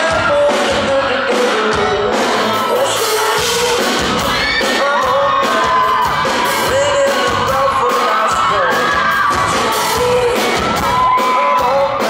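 Live band performing in a concert hall: a lead singer singing over electric guitar and drums, heard loud and steady from within the crowd.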